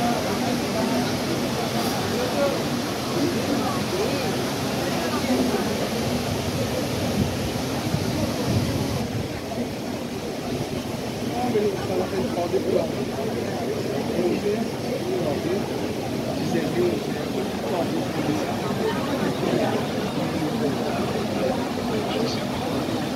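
Floodwater rushing in a continuous torrent through a street, with a crowd of onlookers talking over it.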